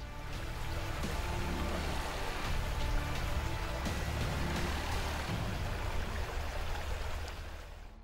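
Shallow stream rushing over rocks, mixed with background music of sustained low notes; both fade near the end.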